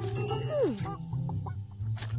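A cartoon rooster's call, held briefly and then gliding down in pitch, over background music.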